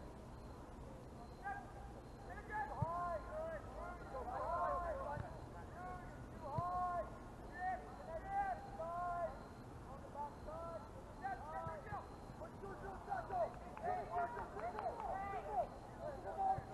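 Distant, indistinct voices of players and spectators calling and shouting across an open soccer field, over a steady low rumble. The calls grow more frequent near the end.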